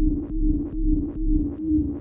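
Elektron Analog Rytm drum machine playing a looping electronic pattern: a deep pulse about twice a second under a steady ringing tone, with short clicks on top. Its sound parameters have been set by the randomizer software.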